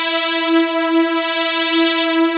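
A Harmor supersaw lead (a detuned sawtooth synth) holds one sustained note while its filter resonance peak is swept through the high end, so the top end brightens and dulls in slow waves.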